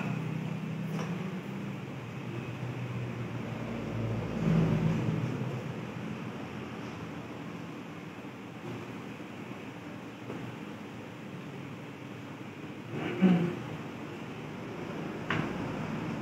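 Steady low machine hum, with a few light knocks and clinks of glassware being handled and set down. The loudest knock comes about thirteen seconds in.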